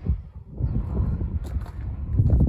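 Wind rumbling on the microphone with handling noise and footsteps on gravel as the camera is carried along outdoors.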